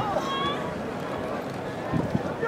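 Outdoor stadium ambience: a steady wash of noise with faint, distant voices, one heard briefly just after the start.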